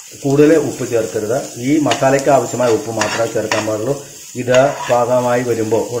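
Metal spoon stirring onion and spice masala frying in a non-stick pan: a sizzle with the spoon scraping, and several sharp clicks of the spoon against the pan.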